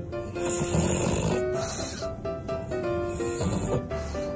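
A pug breathing noisily through its flat, short nose while its cheeks are squeezed. The noise comes in two bouts: a longer one of about a second and a half, then a short one near the end. Background music with a melody plays throughout.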